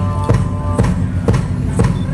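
Live folk band playing: a steady hurdy-gurdy drone and melody over drum beats about twice a second.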